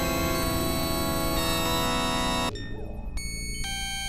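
Experimental synthesizer drone music: a dense cluster of sustained, dissonant electronic tones that cuts off abruptly a little past halfway, leaving a few thin steady tones that step in pitch over a low rumble.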